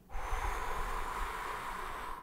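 A man blowing out one long, steady breath through his lips for about two seconds, demonstrating the continuous blowing of a brass player's breathing exercise. It is an even hiss of air with a faint low rumble underneath.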